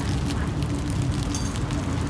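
Plastic wrapping crinkling as a new motorcycle crankshaft is handled and unwrapped by hand, over a steady low background rumble.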